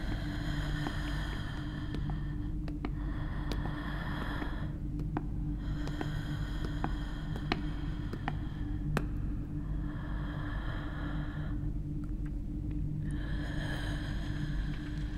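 Slow, close-up breathing, each breath a hissy swell of a second or two, about four breaths, over a steady low hum, with scattered small clicks.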